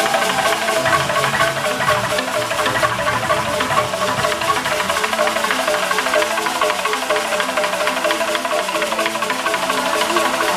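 A large wooden Ugandan log xylophone played by several players at once with sticks, a dense, fast, repeating pattern of short wooden notes.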